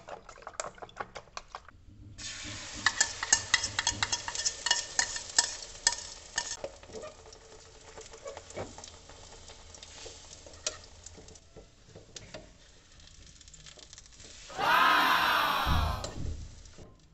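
A spoon clicking rapidly against a plastic bowl as an egg mixture is beaten, then the egg mixture sizzling and crackling in a non-stick frying pan while a spoon stirs and scrapes it, the sizzle loudest at first and dying down. Near the end a short, loud sound with gliding tones cuts in.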